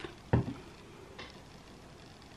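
Handling noise: a single dull thump about a third of a second in, then a faint click about a second later, over quiet room tone.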